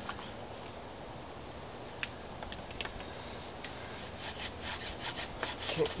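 Bow drill at work: a few light wooden clicks, then from about four seconds in the wooden spindle grinding in the hearth board with quick, short bow strokes. The spindle is catching, so the strokes stay short.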